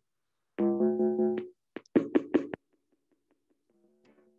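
Electronic keyboard being played: a held chord, then a few short, sharp notes about two seconds in, and a soft chord near the end.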